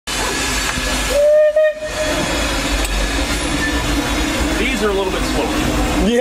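Steam locomotive cab: the C.K. Holliday's steady hiss and rumble, with a single steady steam-whistle blast about a second in, lasting about a second. This is the loudest moment.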